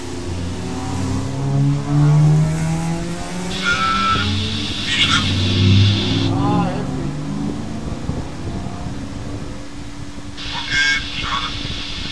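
Race cars passing close by on the circuit, heard from inside a stationary car's cabin: their engines rise and fall in pitch as they go by. High squeals come around four to six seconds in and again near the end. A steady low hum runs underneath.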